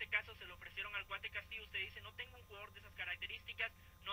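Speech in Spanish from a replayed interview recording, sounding thin and narrow, as if over a telephone line.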